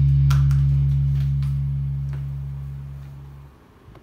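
Electric guitar's last low chord ringing out through the amp and slowly fading, with a few light clicks over it, until it is muted about three and a half seconds in. A soft handling knock near the end.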